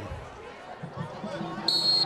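A few low thuds from the field over background noise, then a short, steady, high-pitched whistle blast near the end: a referee's whistle blowing the play dead after the tackle.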